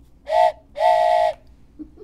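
Train whistle giving two blasts, a short one then a longer one, each a chord of a few tones that sags slightly in pitch as it ends.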